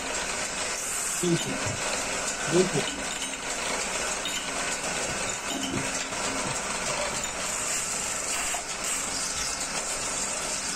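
Stainless-steel milk pan spinning on a metal-spinning lathe with a hand-held tool pressed against it, giving a steady, even hiss of tool on turning metal as the top ring is joined onto the pan body.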